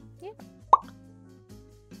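A single short, sharp pop that rises in pitch, about three-quarters of a second in and louder than the talking, over soft steady background music.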